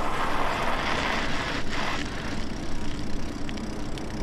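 Steady rushing ride noise of an e-bike on 4-inch fat tyres rolling over icy, snow-covered road, with wind on the microphone and a faint steady tone underneath.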